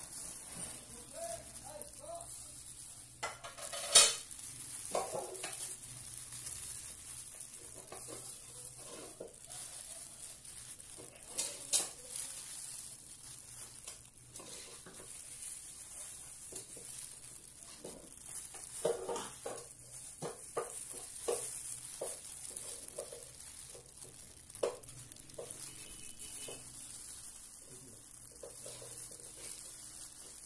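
Thin plastic food-handling gloves crinkling and rustling as hands place toppings on rice spread over banana leaves, with scattered soft taps and a steady faint hiss. A sharp click about four seconds in and another near twelve seconds stand out.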